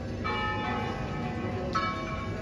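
Church bells ringing in a general swinging peal (volteo general), with two clear strikes about a second and a half apart, each leaving a long ringing tone with overtones.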